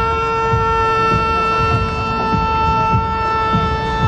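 A single long, steady horn-like note held on one unchanging pitch.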